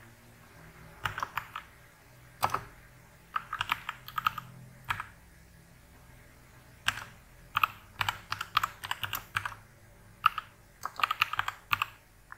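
Computer keyboard typing: short runs of quick keystrokes separated by brief pauses.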